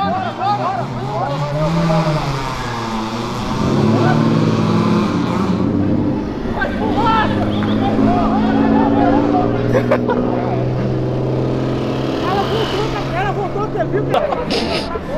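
A car engine revs up and down briefly, then runs at a steady pitch, with people talking over it.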